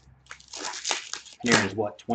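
Wrapper of an Upper Deck hockey card pack crinkling as hands handle and open it, a rustle lasting about a second.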